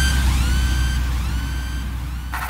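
Electronic logo-intro sound effect: a held deep sub-bass boom under a synth tone that swoops upward and levels off, echoing several times and fainter with each repeat.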